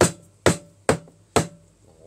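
Chinese cleaver chopping cooked chicken into pieces on a plastic cutting board: four sharp chops, about two a second.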